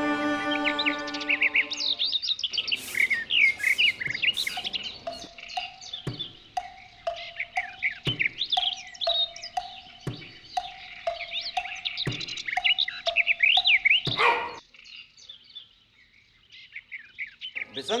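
Bowed-string music fades out over the first couple of seconds into birdsong: many birds chirping, and one note that repeats about twice a second. About fourteen seconds in the birdsong drops away abruptly, leaving only faint chirps.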